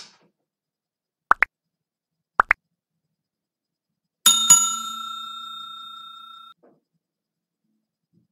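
Subscribe-button animation sound effects: two quick double blips, rising in pitch, about a second apart, then a notification bell struck twice in quick succession, ringing on and fading before it cuts off about two seconds later.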